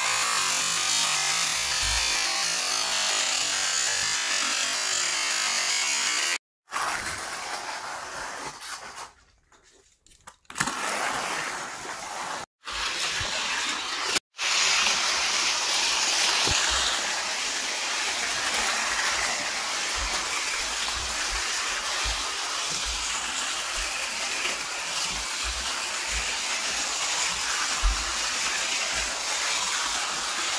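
Small electric motors of Shell saltwater-battery toy race cars whirring steadily as the cars run around a plastic track. The sound drops out briefly a few times in the first half.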